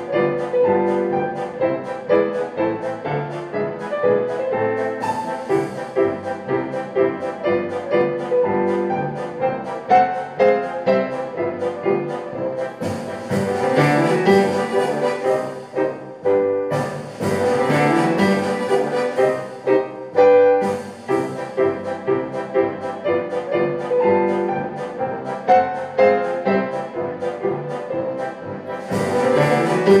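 Digital piano playing a fast classical piece with quick, rhythmic runs of notes, layered with sustained string- and brass-like tones. About halfway through, the texture thickens twice with rising sweeps.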